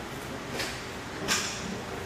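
Two short swishes of cord being worked by hand on a parachute load, the second louder, over the steady whir of a large floor fan.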